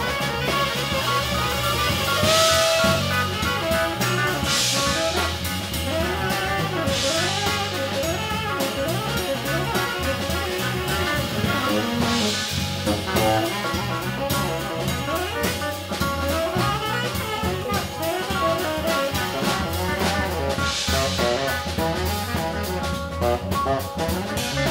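Live band playing a loud jazz-rock jam: saxophone playing over drum kit, electric guitar and electric bass, with cymbal crashes flaring up every few seconds.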